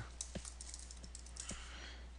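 Computer keyboard being typed on, a handful of light, separate key clicks, as a name is entered into a rename box.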